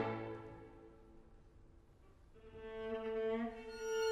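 Live string ensemble of violins, violas and cello in a concert hall. A loud sustained chord breaks off and its ringing dies away in the hall, leaving a near-silent pause. A little over two seconds in, a soft held violin note enters over a lower line and swells.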